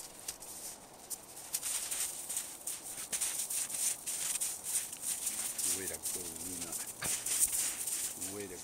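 Rapid, crisp crunching and rustling in snow from dogs' paws, as Norwegian Elkhounds move around close by. A low man's voice murmurs briefly about three-quarters of the way through.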